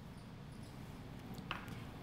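Granola being sprinkled by hand onto yogurt in a small ceramic ramekin: faint light scattering, with one small click about one and a half seconds in.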